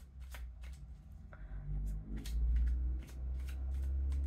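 A deck of tarot cards being shuffled by hand, overhand style: a quick run of soft card slaps, about three or four a second. A steady low hum sits underneath and is louder in the second half.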